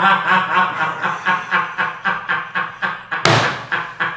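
Men laughing hard in rhythmic bursts of about four a second, with a sharp thump about three seconds in.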